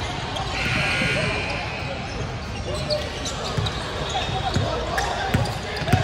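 Basketball bouncing on a hardwood court, scattered thumps that come more often in the second half, over indistinct voices of players and spectators.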